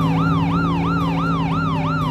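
Electronic siren of a toy ambulance: a fast, repeating up-and-down wail, about three to four sweeps a second.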